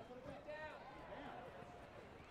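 Faint, distant voices and shouts of spectators at an outdoor rugby match, low over the background noise.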